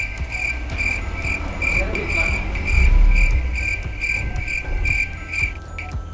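Cricket chirping: a high chirp repeating steadily about twice a second that stops shortly before the end, the comic 'crickets' cue for an awkward silence. A low rumble runs underneath.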